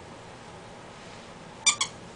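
Rubber squeaky dog toy squeaked twice in quick succession near the end, two short, loud, even-pitched squeaks as a dog bites on it.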